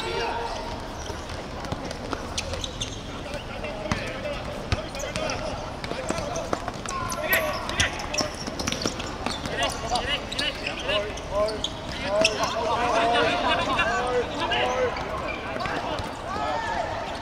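Players shouting and calling to each other during a football game on a hard court, with the voices growing busier in the second half. Scattered sharp thuds of a ball striking the court are heard throughout.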